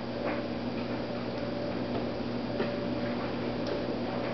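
Steady background hum with a few faint, scattered clicks.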